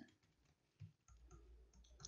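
Near silence with a few faint computer keyboard clicks from typing, the clearest a little under a second in.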